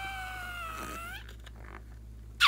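Stretched rubber neck of a slime-filled balloon squealing as the balloon is squeezed and its contents are forced out: one whining tone that dips slightly, rises, and cuts off about a second in.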